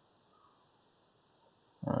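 Near silence: faint room tone and microphone hiss, with a man's voice starting just before the end.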